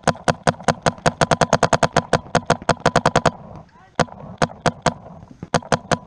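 A paintball marker firing in a fast stream of about eight shots a second. It pauses about three seconds in, fires a few single shots, then runs another quick string near the end.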